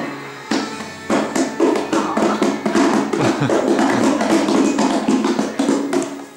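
A small plastic stool juddering and scraping across a ceramic tile floor as it is pushed, making a rapid, irregular clatter of taps, over background music.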